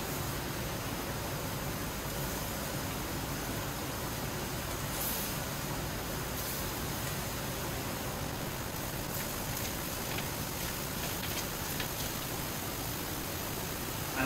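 Gas-fired chargrill running under chicken pieces: a steady hiss of burners and cooking, with a few faint light clicks in the second half.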